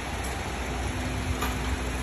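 Car engine idling: a steady low rumble under an even hiss, with a faint steady hum joining partway through.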